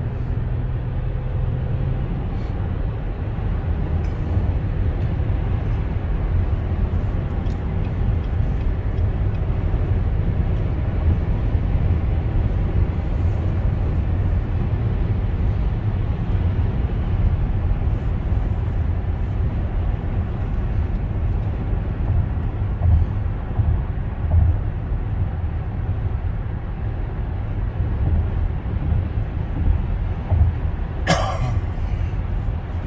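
Steady road noise inside a car cruising at highway speed: a low rumble of tyres and engine that does not change.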